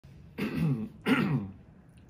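A person clearing their throat twice in quick succession.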